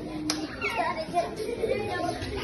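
Young children's voices: chatter and calls of children playing, with a small child talking.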